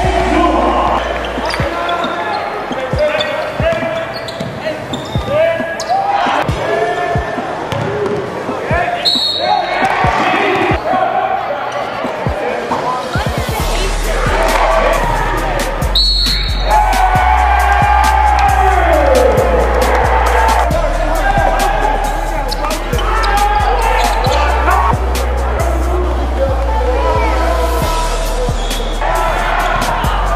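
Live basketball game sound: a basketball bouncing on a hardwood court, many sharp knocks, with players' voices calling out. Music with a stepped bass line is laid underneath and comes in about halfway through.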